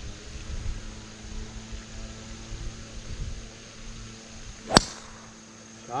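A golf driver striking the ball off the tee: one sharp, short crack about three-quarters of the way in.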